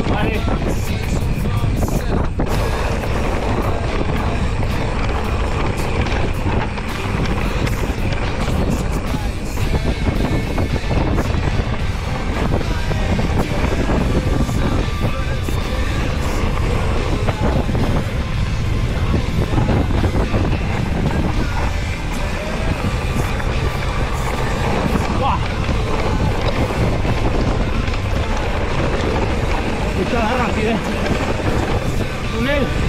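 Wind rumbling on a helmet or body camera's microphone and mountain bike tyres rolling over a rough gravel and grass track, a steady noise with no pauses.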